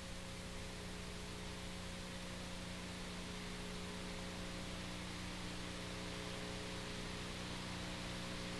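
Faint, steady hiss with a constant low electrical hum and a few fainter steady tones above it, unchanging throughout: the background noise of an old analogue video copy, with no other sound.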